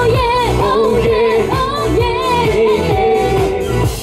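Pop song with sung vocals over a steady, repeating beat, played loud through the stage speakers.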